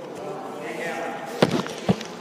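Two sharp thumps a little under half a second apart, over low background voices.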